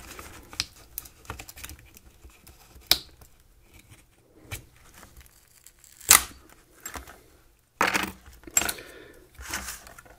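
Glued-in lithium-polymer pouch battery being pried and peeled off its adhesive: faint scattered clicks, a sharp snap about six seconds in, then several short tearing noises near the end as it comes free.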